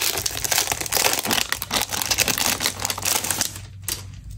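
Packaging crinkling in a dense run of quick crackles as a notebook is unwrapped by hand, stopping just before the end.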